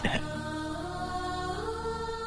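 Soft, sustained film background score: a held chord of steady notes under the dialogue pause, with the pitch of some notes shifting near the end.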